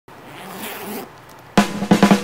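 The metal zipper of a Zara backpack being pulled open, a rasp that grows louder over about a second. About one and a half seconds in, music with drums starts on a sharp hit.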